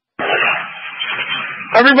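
Two-way radio transmission keying up: hiss and background noise through the narrow radio channel for about a second and a half, then a man's voice starts near the end.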